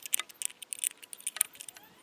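Pliers gripping and twisting a threaded metal cap onto a small pressure gauge: a rapid string of sharp, light metallic clicks and scrapes as the cap is tightened down over PTFE tape on the thread.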